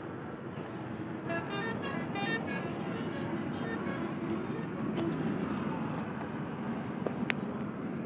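Steady background rumble of distant road traffic, with a brief run of horn-like tones between about one and two and a half seconds in, and a few sharp clicks later on.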